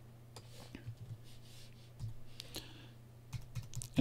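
Faint computer keyboard keystrokes and clicks, a few scattered presses, over a low steady hum.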